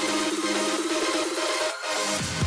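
Background electronic dance music: a fast, rapidly repeating synth figure that stops abruptly near the end in a short break.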